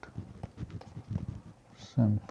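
Irregular soft taps and low knocks from a stylus writing on a tablet, with quiet, half-spoken words in between.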